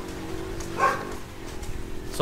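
A single short animal call, like a bark, about a second in, over a steady low hum.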